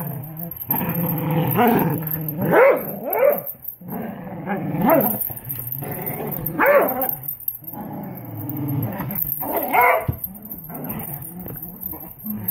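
Dogs growling and barking while playing tug-of-war with a rope toy: a continuous low growl broken by about half a dozen short barks.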